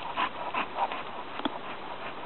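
Excited dog sniffing and panting close to the microphone in short, quick bursts, with one sharp click about one and a half seconds in.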